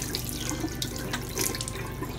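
Bathroom tap running into a sink, with splashes as water is scooped up in cupped hands and splashed onto the face.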